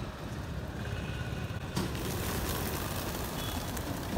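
Steady street traffic in the background. A little under two seconds in, a large flock of rock pigeons takes off together with a broad rush of flapping wings that keeps on.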